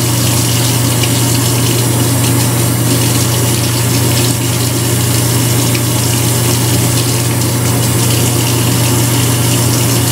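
Steady, loud rushing noise with a constant low hum.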